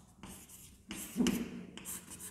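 Chalk writing on a blackboard: a few short scratchy strokes as figures are chalked onto the board.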